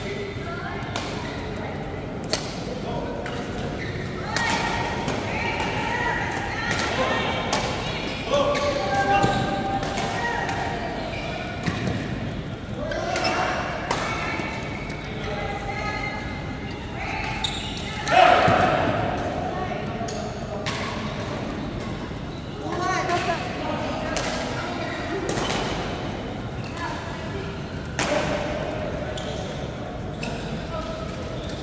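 Badminton rackets striking a shuttlecock in a rally, sharp cracks every second or two in a large hall, with voices in the background.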